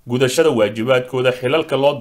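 Speech only: a man narrating in Somali.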